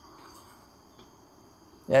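Faint, steady high-pitched chorus of insects in the undergrowth, several thin unbroken tones held throughout.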